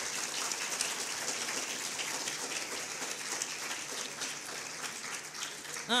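Audience applauding steadily: a dense, even patter of many hands clapping.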